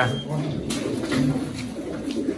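Racing pigeons cooing in their crates, a low soft hum that rises and falls, with a light knock early on.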